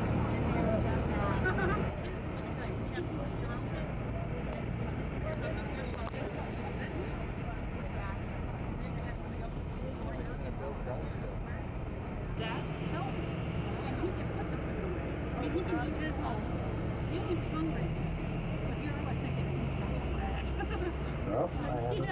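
Inside a passenger carriage of the Bernina Express train: a steady low rumble of the train running along the track, with indistinct chatter of other passengers. The sound changes abruptly about halfway through.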